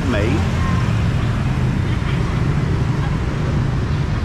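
Steady low rumble of busy street traffic, mostly motorbikes with some cars passing.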